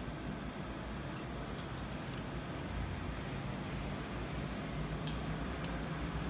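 Dressmaking scissors cutting through a fabric band: a scattering of faint, crisp snips over a steady low hum.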